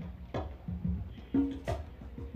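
A live band opens a song with a drum-kit groove of regular low thumps and sharp hits under pitched bass notes, with cymbal strokes coming in near the end.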